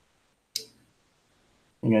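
Near silence broken about half a second in by a single short, sharp click. Near the end a man's voice starts asking "you guys see it".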